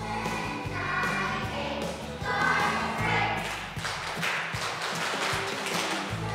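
A children's choir singing together over instrumental accompaniment, the singing swelling louder in the middle.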